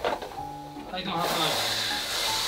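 Background music with held notes. About a second in, a steady hiss of meat sizzling in a pot as it is stirred comes in for about a second and a half.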